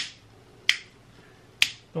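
Plastic LED rocker switch clicking three times, a little under a second apart, as it is flicked on and off to test the light bar wired to it.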